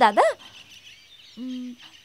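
Faint birdsong chirping in the background, after the last syllable of a spoken word at the start. About one and a half seconds in comes a single short, steady, low hoot.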